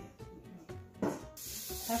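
Butter starting to sizzle in a hot stainless steel pot: a knock about a second in, then a steady sizzle from about halfway, over background music.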